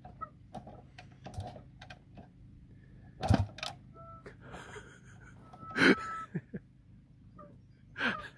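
Kick-start attempts on an early-2000s Kawasaki KX250 two-stroke dirt bike that will not fire: two louder short bursts, about three and six seconds in, among lighter knocks, and the engine never catches.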